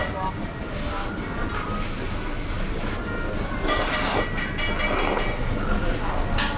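Thick ramen noodles being slurped from the bowl: three airy slurps, a short one about a second in, a long one of about a second from two to three seconds in, and another near four seconds.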